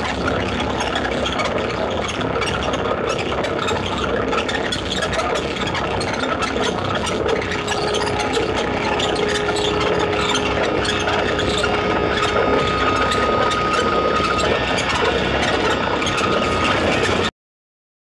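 Dense, droning noise soundscape from a stage performance's soundtrack, with a low sustained tone entering about halfway and a higher one joining a few seconds later. It cuts off suddenly shortly before the end.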